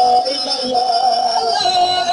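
Music: a singer holding long, wavering notes over the accompaniment.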